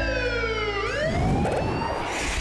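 Edited-in sound effect: a pitched siren-like tone slides steadily down, then about a second in turns and sweeps back up, leading into the show's logo sting.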